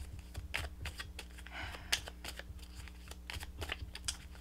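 A deck of tarot cards being shuffled by hand: a quick, irregular run of soft card clicks and slaps.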